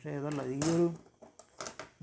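A man speaking for about the first second, then a few light clicks from plastic front-panel pieces being handled.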